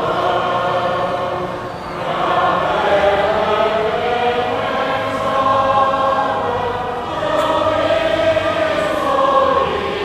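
Many voices of a church congregation singing a hymn together in long, held phrases, with short breaks between phrases about two seconds in and again about seven seconds in.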